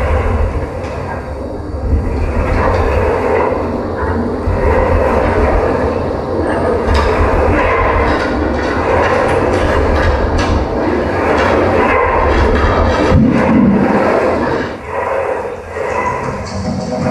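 Live experimental noise music: a dense, continuous rumbling texture with a heavy low rumble, from objects scraped and rubbed on an amplified wooden board and electronics. It thins briefly just before the end.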